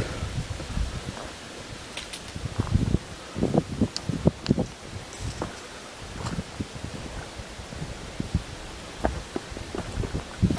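Footsteps through dry leaf litter and twigs on a woodland floor: irregular rustling steps with small snaps, busiest from about two to five seconds in.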